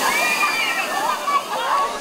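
A heavy torrent of water from a tipping barrel pours down onto swimmers, a continuous rushing splash. Over it, several people shout and shriek with high, gliding voices.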